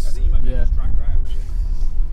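Men's voices, with a few short words or sounds, over a constant low rumble.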